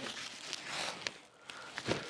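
A sacking-wrapped cardboard carton dragged and shifted off the top of a stack: rustling and scraping of the wrapping, with a thump near the end.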